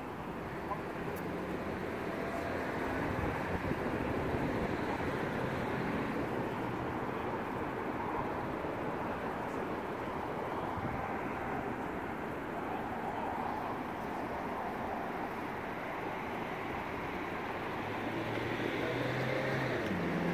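Steady traffic and vehicle engine noise, an even rumble with no distinct events.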